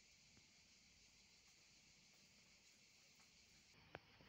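Near silence: a faint steady hiss, with a single short click near the end.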